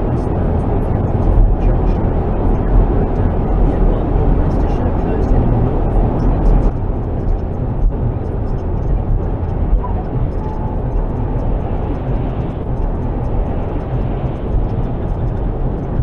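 Steady in-cabin road and wind noise from a car cruising at motorway speed, picked up by a dashcam microphone and strongest in the low rumble. Muffled voices from the car radio sit underneath.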